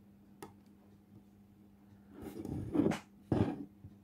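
Plastic parts of a mechanical speedometer's odometer being handled: one short sharp click about half a second in, then two louder stretches of rubbing and scraping in the second half as the fingers work the number wheels and cogs.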